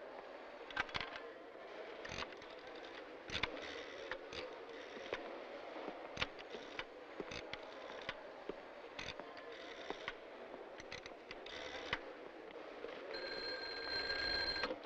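Scattered clicks and knocks from a wall pay phone being handled and dialed, over a steady low background murmur. Near the end a desk telephone bell rings for about a second and a half and stops abruptly as the call is answered.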